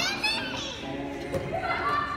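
Children shouting and shrieking in a game of dodgeball in a gym hall, with a high shriek that sweeps down in pitch at the start and a single thud a little past the middle.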